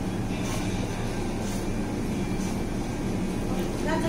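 Supermarket background: a steady low machine hum of the store's building plant, with faint soft rustles.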